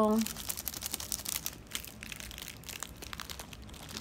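Plastic ice-cream-bar wrapper crinkling in the hands, a quick run of small crackles that thins out after about two seconds.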